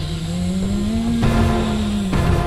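Sound effect of an approaching vehicle: an engine-like hum that rises in pitch over about a second and then holds steady, over a low rumble.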